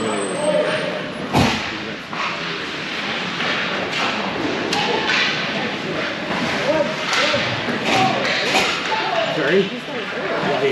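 Hockey sticks and the puck knocking on the ice and boards during play, the loudest knock about a second and a half in, over many overlapping, indistinct voices of players and spectators in the echoing rink.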